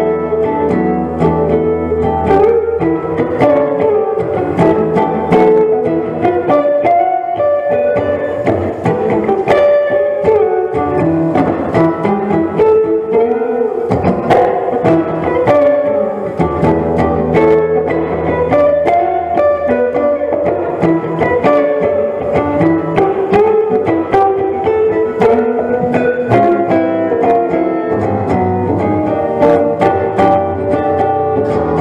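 Jazz guitar playing melodic lines with bass accompaniment; the bass thins out for a stretch partway through, then returns.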